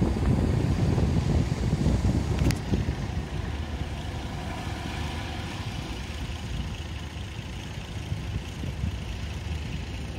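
A fishing boat's engine running steadily offshore, with surf breaking on the beach. A sharp click about two and a half seconds in, after which the sound is somewhat quieter.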